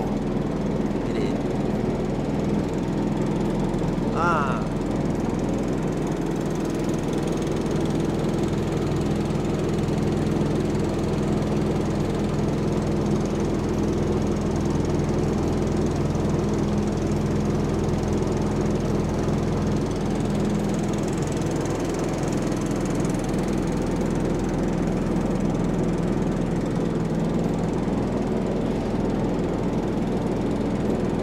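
A river boat's engine running steadily at cruising speed as the narrow wooden boat moves along, with a constant hum and no change in pace.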